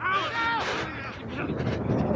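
Distant shouts of players across a rugby pitch, then wind buffeting a body-worn camera's microphone with footfalls on grass as the wearer runs, growing louder toward the end.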